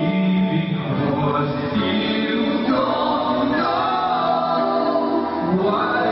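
Several men and women singing a song together into microphones, backed by a live band with electric guitar, the voices held on long sung notes.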